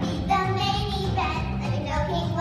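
Children singing over backing music with a steady bass beat, the voices holding two long notes.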